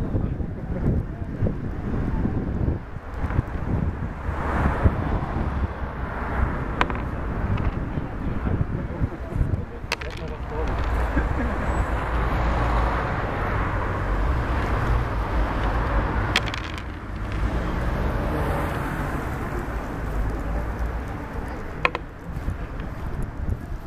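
Outdoor street background with a steady low traffic rumble and indistinct voices, broken by a few single sharp clicks of wooden backgammon checkers set down on the board.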